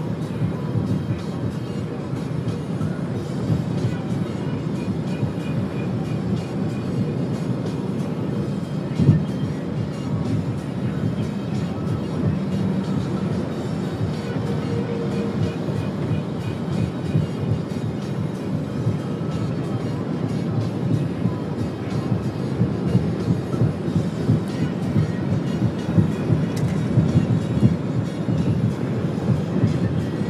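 Steady wind rush and road noise of a moving vehicle, with music under it. A single sharp knock about nine seconds in.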